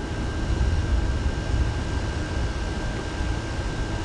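A window air conditioner running with a thin steady whine, over a steady low rumble.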